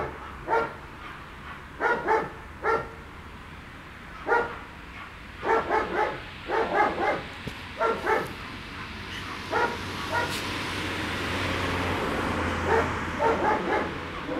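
A dog giving short barks and yips in quick groups of two to four, with pauses between, while playing roughly with a person. A rushing noise builds in the second half.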